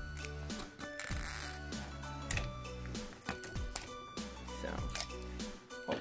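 Background music plays throughout, under repeated short clicks and crackles of a plastic toy capsule's shrink-wrap being cut with scissors and handled.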